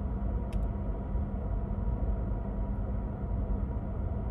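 Steady low rumble and hum of a car heard from inside the cabin, with a faint click about half a second in.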